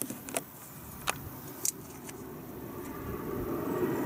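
A few short sharp clicks from handling masking tape and scissors, over a low rumble that grows steadily louder through the second half.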